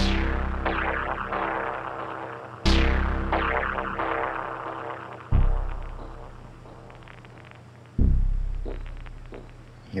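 Erica Synths DB-01 Bassline synthesizer playing four single notes about every 2.7 s, each starting sharply and fading away, through a Strymon Timeline delay on its lo-fi setting (8-bit, 4 kHz sample rate). Faint vinyl-style crackling rides on the delay repeats from the dynamic vinyl setting.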